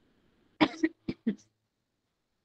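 A person coughing: a quick run of about four short coughs about half a second in.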